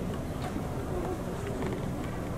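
Steady buzzing background noise with no clear event, room tone picked up by the hall's microphones.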